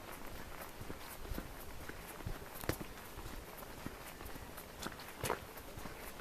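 Footsteps walking down a stony mountain path, an irregular run of steps and scuffs, with two louder ones near the middle and near the end.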